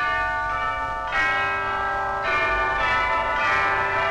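Opening music of ringing bells: four struck bell chords about a second apart, each ringing on into the next, starting suddenly out of silence.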